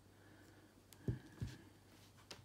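Small plastic Bluetooth speaker being set down on a cloth-covered table: a light click, then two soft low knocks about a third of a second apart, over a faint steady hum.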